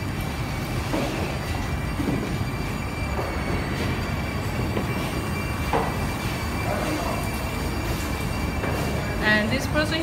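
Steady low rumble of factory-floor background noise with a few faint steady tones and scattered distant voices; a woman starts speaking near the end.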